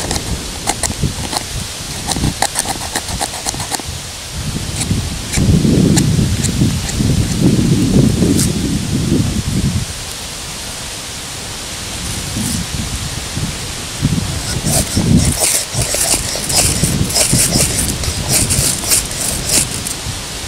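Scraping strokes of a multi-tool's awl across wood, raising fuzz shavings, with a low rumble on the microphone in the middle and quick runs of strokes near the end.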